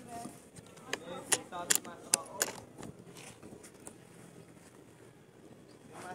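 A handful of sharp clicks and crackles a few tenths of a second apart, most of them in the first half, over faint low voices.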